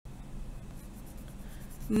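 Pen drawing lines on notebook paper: soft, faint scratching with light ticks, over a low hum.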